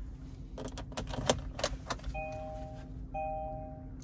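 A key ring jangles and the key clicks into the ignition lock of a 2017–2022 Kia Sportage and is turned, with several sharp clicks in the first two seconds. Then the dashboard warning chime sounds twice, each a steady tone nearly a second long.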